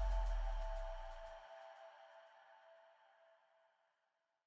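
Closing logo sting music: a ringing tone over a deep low note, dying away and fading out over about three and a half seconds.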